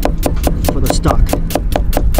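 Chef's knife slicing an onion on a wooden cutting board: rapid, even knife strokes against the board, about eight a second.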